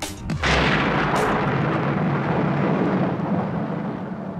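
A deep, rolling boom from the audiobook's sound design: it starts suddenly about half a second in, rumbles on and slowly fades away.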